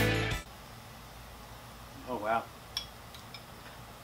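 Background music cutting off about half a second in. Then a short vocal sound from a man about two seconds in, followed by a few light clinks of a spoon against a bowl.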